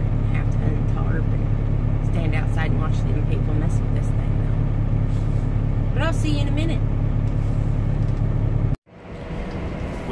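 Steady low drone of a Peterbilt 579's diesel engine heard inside the cab, with a woman talking over it. It cuts off abruptly about nine seconds in, giving way to quieter room sound.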